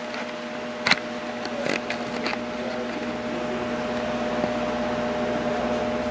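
Steady machine hum at two fixed pitches, with a few sharp clicks in the first couple of seconds and a hiss that slowly grows louder.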